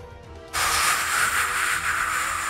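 A hissing whoosh sound effect for a cannon shot. It starts suddenly about half a second in and holds steady, over faint background music.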